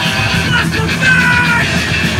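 Thrash metal band playing live at full volume: distorted electric guitars, bass and drums, with shouted vocals.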